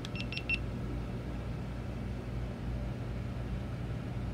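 GoPro Max 360 camera beeping as it powers on: four quick high beeps in about half a second, over a steady low background hum.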